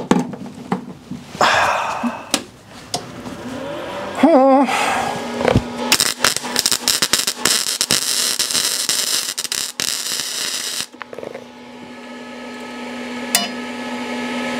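Electric arc welding with a Weldclass multi-process welder drawing its power from an EcoFlow Delta Max battery pack. A few scratches and ticks come as the arc is struck, then the arc crackles steadily for about five seconds and cuts off. After that the power station's cooling fans come on with a steady hum that grows louder near the end.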